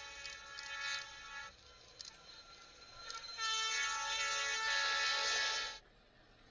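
Locomotive air horn sounding in two long blasts of a chord. The first fades about a second and a half in; the second, louder, starts about three seconds in and cuts off suddenly just before the end.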